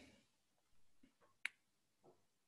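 A single sharp click about one and a half seconds in, from paging back through presentation slides on a computer, over near silence.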